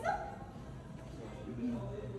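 Distant, muffled voices in a phone recording of a street confrontation, with a short high whimper-like cry right at the start and a low steady hum coming in during the second half.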